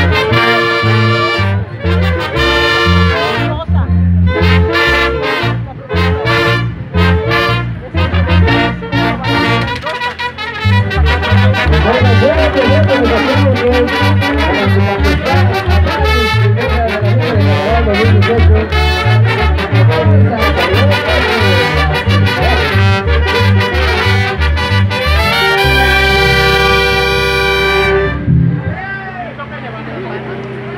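Brass band music with trumpets and trombones over a steady bass beat, ending on a long held chord that stops about two seconds before the end, leaving crowd voices.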